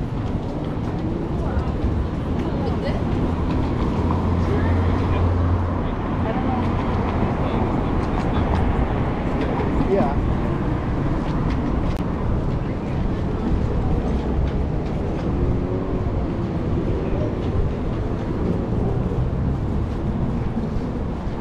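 Busy city street ambience: continuous traffic rumble from passing cars with the chatter of passers-by. A deeper rumble swells about four seconds in and fades by about six.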